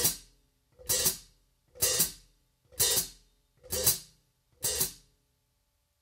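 Hi-hat cymbals played with the foot pedal alone using the heel-toe technique: six even strokes about a second apart, each a quick splash of the cymbals closing at once into a chick.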